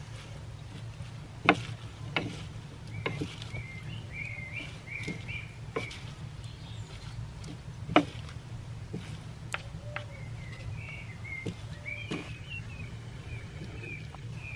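Wooden salad servers knocking and scraping against a turned wooden bowl as a leafy salad is tossed, in scattered sharp clicks, the loudest about a second and a half in and again about eight seconds in. Birds sing in the background.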